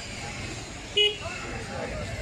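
A short vehicle horn toot about a second in, over people talking in the background.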